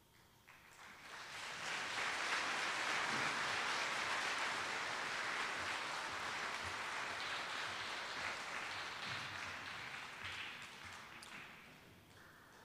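Audience applauding: the clapping starts about half a second in, swells within a second or two, and dies away near the end.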